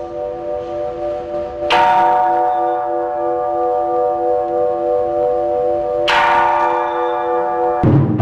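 Large hanging temple bell struck with a mallet: two strikes about four seconds apart, each followed by a long ring with a slow, wavering pulse in its lower tones, over the tail of an earlier strike.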